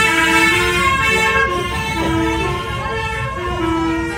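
Music playing inside a moving bus: a melody of long held notes stepping up and down.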